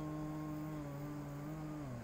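A person humming a long, low, steady note that dips and breaks off near the end.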